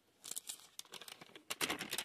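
Thin Bible pages being turned, a light papery rustling and crinkling that grows busier in the second half.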